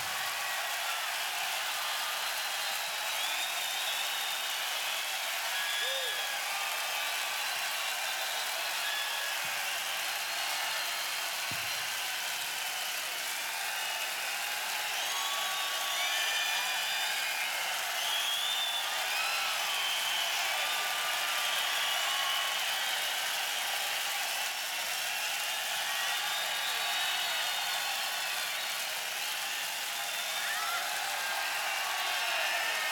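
Large concert crowd cheering and whistling, a steady mass of crowd noise with many short whistles and shouts rising and falling throughout.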